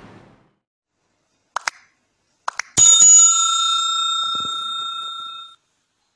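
Subscribe-animation sound effects: two quick double clicks, then one bright bell ring that rings on for about three seconds and cuts off abruptly near the end.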